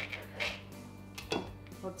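Serrated knife sawing through a rolled tortilla on a plastic cutting board, a short scraping stroke about half a second in, then a single sharp knock just past halfway as the knife meets the board. Quiet background music runs underneath.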